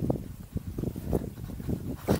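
Wind buffeting the microphone: an uneven low rumble with gusty pulses.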